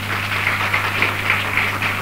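Dense, irregular crackling noise over a steady low hum.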